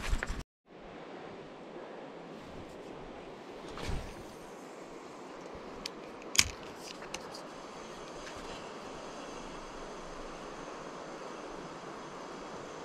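Steady rush of flowing water from river rapids, broken by a few sharp clicks, the loudest a little after six seconds in.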